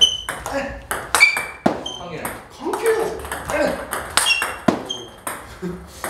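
Table tennis ball being hit back and forth: sharp clicks of the celluloid-type ball off tacky rubber paddles and the table, several with a brief bright ring, in an uneven run of strokes. The near player drives the ball against heavily cut backspin pushes.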